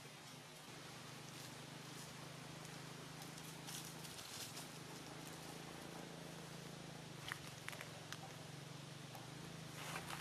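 Faint rustling and a few light clicks from dry leaf litter as baby macaques move about, over a steady low hum.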